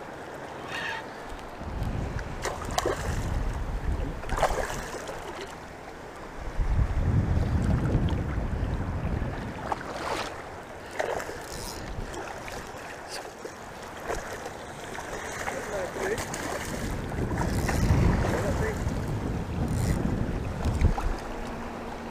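Wind buffeting the microphone in three long gusts over the wash of choppy shallow water, with a few short ticks in between.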